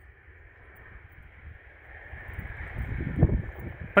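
Wind rumbling on the microphone, building from about halfway through and peaking near three seconds in, over a faint steady hiss.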